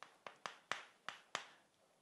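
Chalk tapping and scraping on a chalkboard while characters are written by hand: a quiet series of about six short, sharp strokes.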